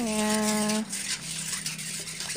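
A wire whisk stirring a pot of unheated green agar-agar, sugar and pandan liquid to dissolve the sugar, a soft, even swishing. For the first second or so it sits under a drawn-out spoken word.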